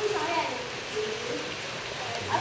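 Indistinct voices of people talking, over a steady background hiss.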